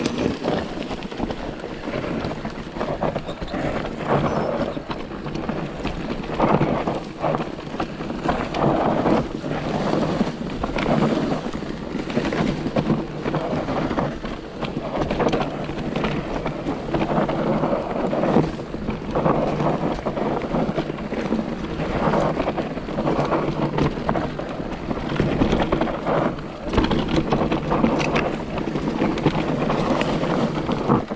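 Electric mountain bike riding over a leafy dirt forest trail: tyres rolling on dirt with frequent knocks and rattles from the bike over bumps, and wind rushing on the handlebar camera's microphone.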